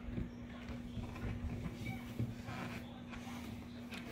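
Quiet room with a steady low hum and a few soft taps as fingers touch the top of a plastic touch lamp.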